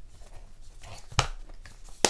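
A leather zippered makeup bag being handled and filled, with soft rustling and small taps and one sharp click a little past the middle.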